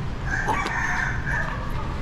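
A rooster crowing once: one long call lasting about a second and a half.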